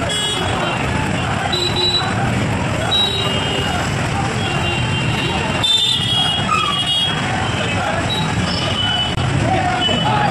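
Street traffic noise mixed with the indistinct voices of a crowd walking, with several short high horn toots.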